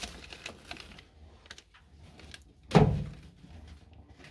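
Pet rat scrambling inside a hanging plastic cage house: small scratchy clicks, then one loud hollow knock of the plastic about three-quarters of the way in.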